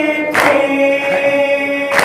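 Men chanting a nauha, an Urdu lament led by a reciter on a microphone, in long held lines. Twice the chant is cut by a sharp slap of hands striking chests in unison (matam), about a second and a half apart.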